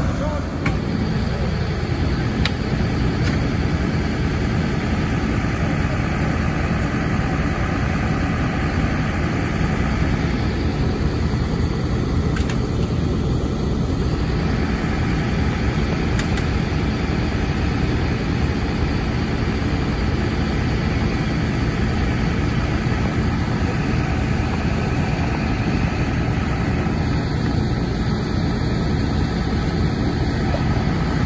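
Fire engine's diesel engine running steadily at idle, a constant low drone.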